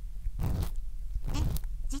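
Ear pick scraping and rubbing inside the ear of a 3Dio binaural microphone, in a few slow, rustly strokes heard very close up. A short synthesized voice exclaims near the end.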